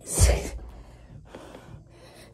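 A hard, gasping breath of effort with a low thud as a pop-up push-up lands, then a fainter breath about a second and a half later.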